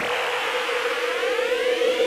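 Electronic music build-up: a held synth tone with a stack of pitch sweeps rising slowly under it, a riser effect.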